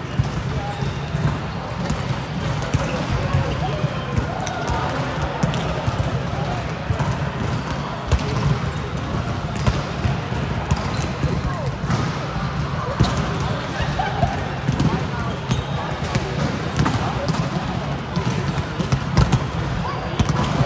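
Sports-hall ambience: volleyballs being hit and bouncing on hard court floors in scattered sharp thuds, over indistinct chatter of players and onlookers in a large hall.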